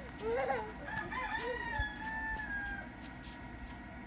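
A rooster crowing once: a short choppy start, then a long held note that sinks slightly in pitch before it ends, about three seconds in.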